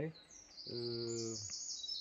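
A songbird singing a high, fast trill of rapidly repeated notes that starts just after the beginning and runs on, stepping between pitches. A man's drawn-out "uh" is heard in the middle.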